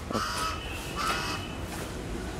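A bird calling twice, about a second apart, each call short, over a steady low background rumble.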